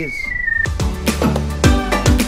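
Handheld pipe locator sounding a single high tone that slides slowly lower and cuts off under a second in, as it picks up the signal from the sewer camera's transmitter in the pipe below. Background music with deep bass notes follows.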